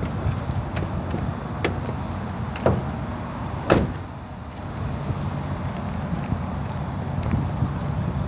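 A vehicle door being shut with a knock a little under four seconds in, after two lighter clicks, over a steady low outdoor rumble.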